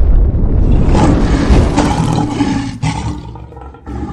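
A loud, drawn-out lion roar sound effect. It is strongest over the first couple of seconds and trails off near the end.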